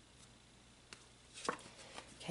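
A tarot card being drawn from the deck and handled: a light tick about a second in, then a few sharp taps and snaps of the card about a second and a half in, over faint room hiss.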